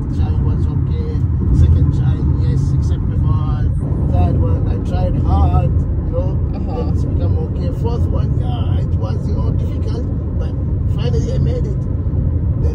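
Steady low rumble of a car driving, heard from inside the cabin, with a man's voice talking over it at times.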